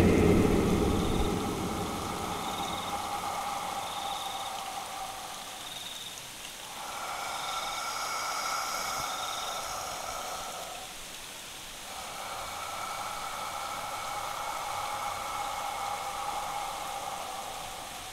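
Ambient meditation drone: soft sustained synth tones that swell and fade every few seconds over a steady hiss, with faint short high tones repeating in the first half.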